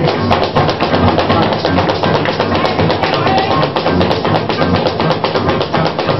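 Joropo tuyero played without singing: a plucked harp over a fast, steady maraca rhythm.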